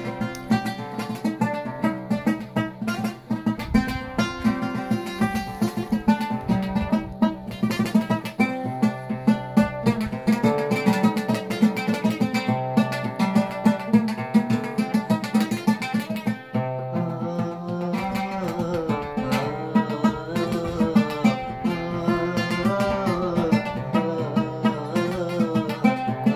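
Solo oud plucked with a plectrum, a fast run of notes. In the later part there are sliding, wavering notes, as the fretless neck allows.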